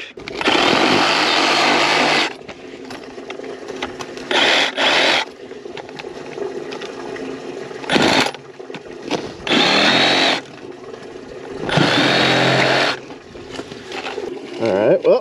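Milwaukee M18 Fuel cordless reciprocating saw cutting a hole into a buried plastic drain pipe. It runs in five bursts, the first and longest about two seconds, with short pauses between.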